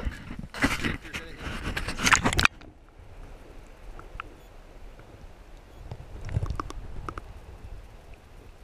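Splashing and handling noise on a camera as it goes into the water, loud for about two and a half seconds. It then cuts off suddenly to a muffled underwater hush with a few faint ticks and a low swell of water movement near the end.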